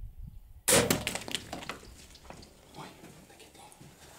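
Bow shot on impala at a waterhole: a sudden loud crack about a second in, then a rapid scatter of hoof clatter and splashing as the herd bolts, dying away over the next second or two.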